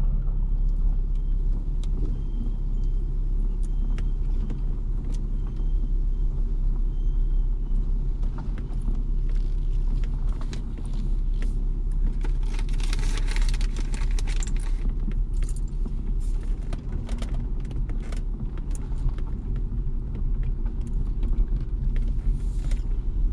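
Car driving slowly on a gravel road, heard from inside the cabin: a steady low rumble of engine and tyres, with scattered clicks of gravel under the tyres and a louder crunching stretch about halfway through.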